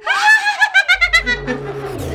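A woman's shrill, high-pitched laugh, the cackle of a ghost character. It starts suddenly and runs on in quick, even pulses, with a low drone from the background score coming in underneath about a second in.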